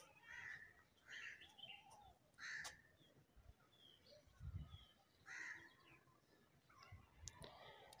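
Faint, distant bird calls, a handful of short calls spread over near silence.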